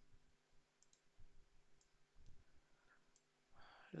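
Near silence: room tone with a few faint, isolated clicks of a computer mouse. A voice begins right at the end.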